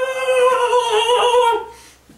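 A young man's voice holding one loud, long sung 'awww' on a nearly steady pitch, which trails off about a second and a half in.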